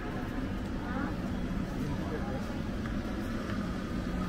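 Street ambience: indistinct voices of passers-by over a steady low hum.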